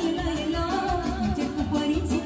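Live dance band music with a steady beat: a saxophone melody over electronic keyboards.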